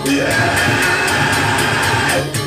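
Balinese gamelan playing loudly and continuously as accompaniment to a Rangda dance.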